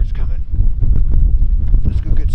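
Wind buffeting the microphone with a rough low rumble, over a man's voice speaking in short stretches.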